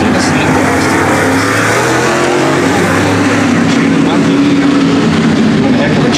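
Dirt late model race cars' V8 engines running hard around the track, several at once, their pitch rising and falling as the cars go by.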